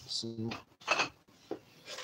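A man's voice saying "so", then a short rubbing noise about a second in.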